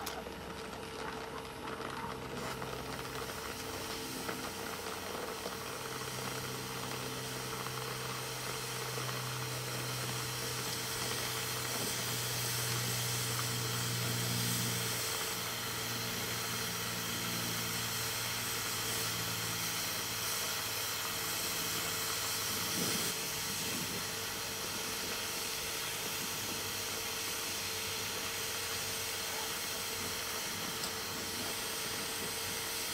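Brazing torch flame hissing steadily while it heats a copper refrigeration coil tube to braze shut a hole burned through it.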